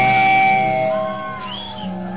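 Live rock band: an electric guitar holds one long note as the drumming stops. About a second in, the sound falls away to quieter held notes with a few gliding pitches.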